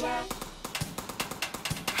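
A quick, rhythmic tapping drumbeat: a run of sharp percussive taps several to the second.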